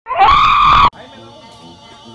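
A person's loud, high-pitched scream lasting just under a second, rising in pitch at its start and then holding.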